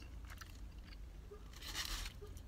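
A person chewing a bite of pizza with a crunchy crust, faint small crunching clicks scattered through, and a brief soft rustle near the end.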